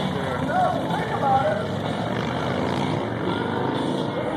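Motorcycle engines running steadily in a low rumble, with crowd voices over it.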